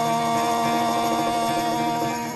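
Voice and acoustic guitar holding one long final note at a steady pitch, the closing chord of an acoustic rock song.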